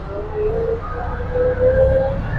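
Auto rickshaw (bajaj) engine running as it drives, heard from inside the cab: a steady low rumble with a faint whine that rises slowly in pitch.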